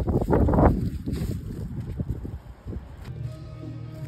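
Wind buffeting the microphone in gusts, a low rumble, which gives way about three seconds in to background music with steady held notes.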